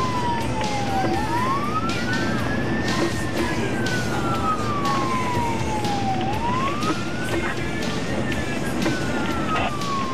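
Emergency vehicle siren in a slow wail, heard from inside the responding vehicle over steady road noise. It rises over about two seconds and falls over about three, cycling about twice.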